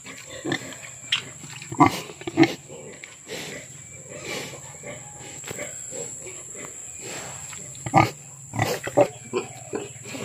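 Sow grunting in short, scattered grunts, the loudest about two seconds in and again near eight seconds.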